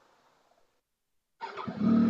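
Triumph Tiger 800 XRT's three-cylinder engine, silent after a stall, restarted about one and a half seconds in: a brief crank, then the engine catches and settles into a steady idle.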